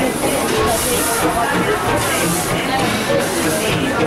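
Steam locomotive working slowly, its exhaust hissing in rhythmic bursts about once a second, over the voices of people nearby.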